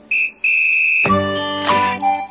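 A high, steady whistle tone sounding twice, a short toot and then a longer one of the same pitch, cut off about a second in; background music with instrument notes follows.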